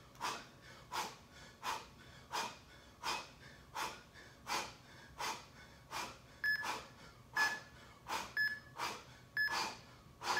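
A man exhaling hard in rhythm with bicycle crunches, about three sharp breaths every two seconds. From about six and a half seconds in, short beeps sound about once a second: an interval timer counting down the end of the work period.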